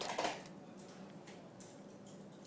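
Quiet studio room tone with a few faint, light clicks of small objects being handled on a desk.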